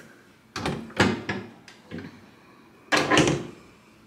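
Wooden vanity cabinet doors being handled and swung shut: a few knocks with a sharp clunk about a second in, a smaller one near two seconds, and a longer, louder clatter about three seconds in.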